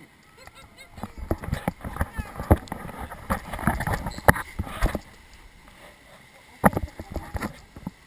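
Round raft of a river rapids ride bouncing through white-water rapids: a dense run of splashes and slaps of water against the raft, loudest through the middle seconds, then quieter, with another short burst of splashes near the end.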